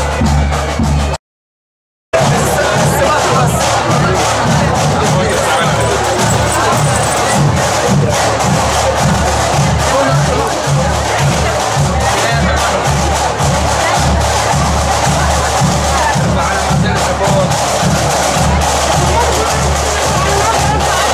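Scout marching band playing in procession: drums beating a steady march rhythm with brass, over the noise of a crowd. The sound drops out completely for about a second near the start.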